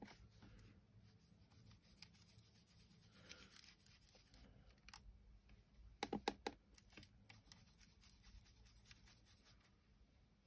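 Near silence: faint rubbing of a soft brush working green shimmer powder over gilding flakes on a card butterfly, with a few light clicks about six seconds in.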